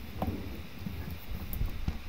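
Faint handling noise of hands on the dishwasher's plastic drain fittings and hose: low, irregular knocks and rubbing, with a small click just after the start.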